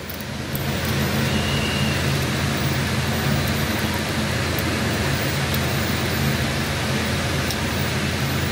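A steady mechanical hum and rumble with an even hiss over it, growing a little louder about half a second in and then holding constant.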